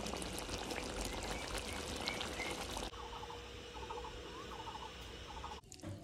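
Meat-and-potato curry simmering in a blackened iron kadai: a steady bubbling hiss with small pops. About three seconds in it gives way to a quieter background with faint, short, repeated sounds.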